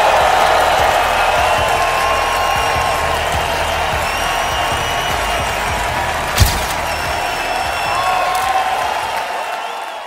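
Audience applauding, with a few drawn-out cheering tones over the clapping and a single sharp knock about six and a half seconds in. The applause tapers off near the end.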